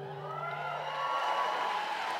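Audience cheering and applauding, with a short whoop early on, as the last held notes of the dance song fade out in the first second.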